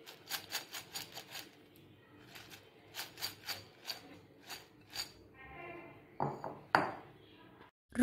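Crisp fried sweet corn kernels rattling and clicking against the sides of a glass bowl as it is shaken, in quick clusters of sharp clicks, with a few louder rattles near the end.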